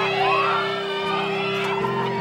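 Music with steady held low notes, over a crowd of many voices shouting and cheering.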